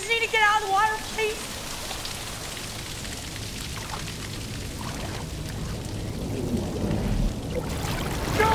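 Waterfall pouring steadily into a pool: a constant rush of falling water that grows a little louder and deeper toward the end.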